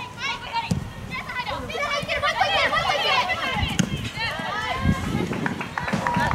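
Women soccer players shouting and calling to one another across the pitch, several high voices overlapping in short calls, with a few dull low thuds.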